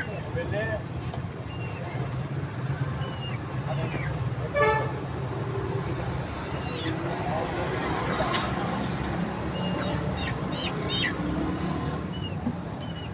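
Street traffic rumbling steadily, with a short vehicle horn toot about four and a half seconds in and a sharp click about eight seconds in. Scattered short, high bird chirps come and go throughout.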